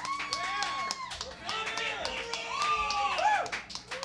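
Live audience applause: irregular hand clapping mixed with long, voiced whoops and cheers.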